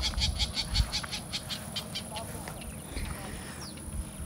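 A small animal calling in a rapid, even run of high clicks, about seven a second, that fades out after about two and a half seconds, over a low rumble.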